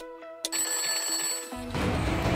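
Countdown ticks about every half second over a sustained synth tone, the last tick giving way to a bell-like ring as the timer reaches zero. About a second and a half in, electronic music with a beat starts.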